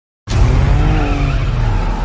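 Car chase sound from a film soundtrack: a car engine running hard with tyres squealing over a deep rumble, starting abruptly a quarter of a second in.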